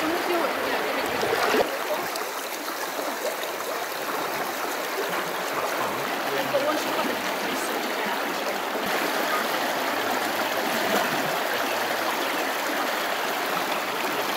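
Shallow, fast-flowing river running over a gravel bed: a steady rush of water.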